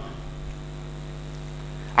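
Steady electrical mains hum from the microphone sound system: an unchanging low hum made of many evenly spaced tones.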